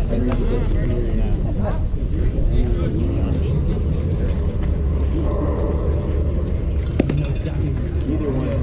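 Indistinct spectator chatter over a steady low rumble of wind on the microphone, with a single sharp knock about seven seconds in.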